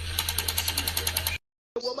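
Rapid, even mechanical clicking, about twelve clicks a second over a steady hum, which cuts off suddenly about halfway through. A voice begins just before the end.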